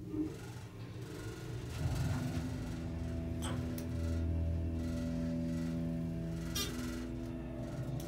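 Dover Impulse hydraulic elevator's dry-type pump motor running, heard from inside the car. It is a steady hum pitched at E, building up about two seconds in and holding even.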